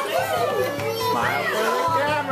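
Several voices of a family group talking over one another, with one high voice swooping up and down about a second in.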